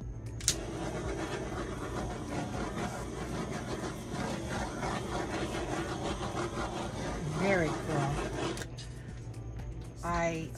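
Handheld torch lit with a click about half a second in, then a steady hissing roar for about eight seconds before it cuts off, played over the wet acrylic paint of a fresh pour.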